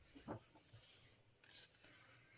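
Near silence, with faint rubbing of hands on the paper pages of a large book and one brief soft sound about a third of a second in.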